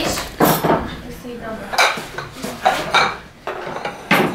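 Tableware clattering: grey ceramic plates being handled and set down and a ladle in a stainless steel soup pot, giving several sharp clinks and knocks.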